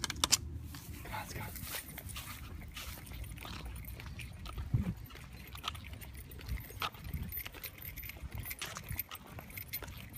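Light jingling and scattered clicks of a small dog's leash and collar hardware as it walks on a leash, over a low steady rumble.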